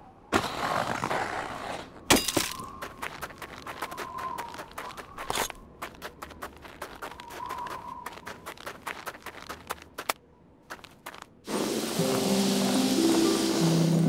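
Cartoon curling sound effects: a knock about two seconds in, then a long run of small clicks and scrapes on the ice. Near the end a loud, steady brushing sets in as a curling broom sweeps the ice, and music comes in with it.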